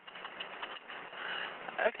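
Hiss and small crackling clicks on a recorded 911 telephone line during a pause in the call, with a brief spoken 'OK' near the end.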